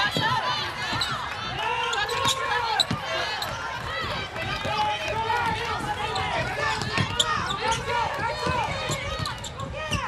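On-court sounds of a basketball game: sneakers squeaking on the hardwood floor in many short chirps, the ball bouncing on the court, and players calling out.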